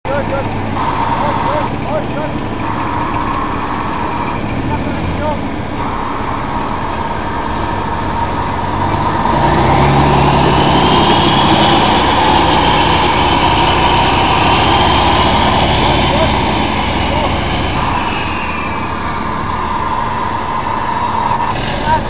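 A tank's engine running loud at close range. About nine seconds in it revs up, with a whine that rises in pitch and holds, then eases back down a few seconds before the end.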